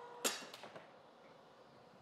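AccuQuilt GO! Big electric fabric cutter running with a steady motor hum, which stops with a sharp click about a quarter second in as the die and mat finish passing through its rollers. A few faint scrapes follow.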